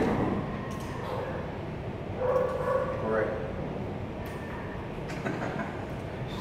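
Indistinct background voices over steady room noise, with a louder pitched, speech-like stretch lasting about a second, two seconds in.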